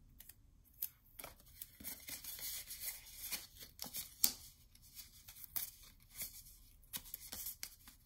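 Double-sided tape being peeled and pressed onto a small paper envelope: irregular soft crackles, rustles and small ticks of paper and tape being handled, with a sharper tick about four seconds in.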